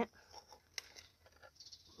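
Faint rustling and handling noises, with one short click just under a second in.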